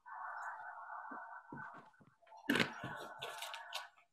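Rustling and handling noise with a few soft knocks, strongest about two and a half seconds in, heard through a video-call microphone as someone gathers pencil and paper.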